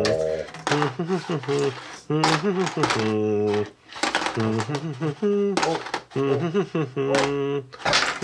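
Human voices making wordless vocal sounds, short 'uh' and 'ooh' noises and hums with brief gaps, one held for about half a second midway.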